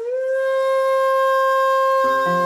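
Shakuhachi holding one long note. It bends up slightly into pitch at the start, then stays steady with no vibrato, in the instrumental close of a shigin piece.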